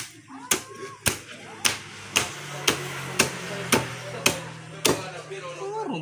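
A large knife chops into a whole yellowfin tuna with about ten sharp, evenly spaced strikes, roughly two a second. A low steady hum runs under the later strikes.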